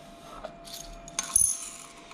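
Stainless steel dosing cup of coffee beans being handled, with a sharp metal-on-metal clink about a second and a half in that rings briefly.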